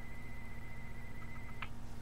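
Steady low electrical hum with a thin high whine, which cuts off with a short click about one and a half seconds in.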